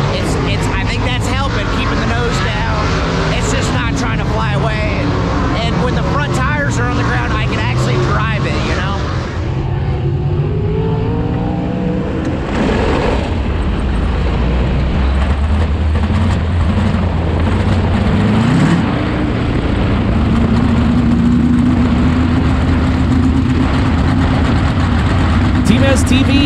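A 410 sprint car's V8 engine heard from inside the cockpit, running steadily at low speed from about halfway through. Near the two-thirds mark the revs rise, then hold at a steadier, higher note. Before the engine comes in, a man's voice is heard.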